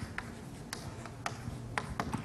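Chalk writing on a blackboard: a handful of short, sharp chalk taps and strokes, about five in two seconds, as symbols are written.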